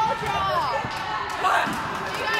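Voices of players and spectators calling out in an echoing gymnasium, with a few short thuds of a volleyball being hit.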